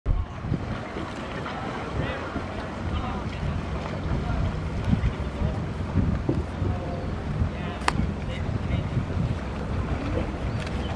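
Motor of a river raft running steadily under way, a constant low hum, with wind buffeting the microphone and water rushing past the hull.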